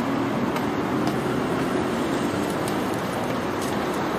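Steady city street traffic noise: a continuous wash of cars and engines on a wide avenue, with a low steady engine hum under it.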